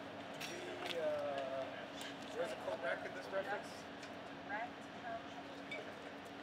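Indistinct voices of people talking at a distance, in short snatches, over a steady hum, with a few light clicks.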